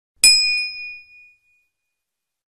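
Notification-bell sound effect as the subscribe animation's bell icon is clicked: one bright ding that rings out and dies away over about a second.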